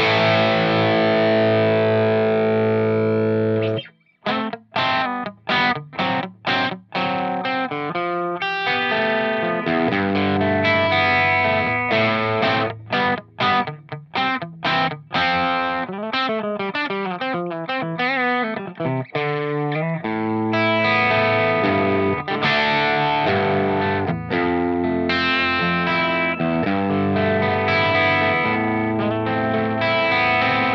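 Electric guitar played with overdrive from a Boss BD-2w Blues Driver (Waza Craft) pedal. A held chord rings out and stops about four seconds in, then come short choppy chord stabs, a busier riff with notes bending in pitch in the middle, and sustained ringing chords through the last ten seconds.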